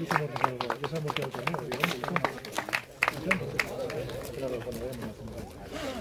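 A few people clapping unevenly for about three and a half seconds, over a crowd chatting.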